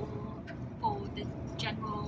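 Steady low rumble of a passenger train running, heard inside the carriage, with brief bits of a woman's voice over it.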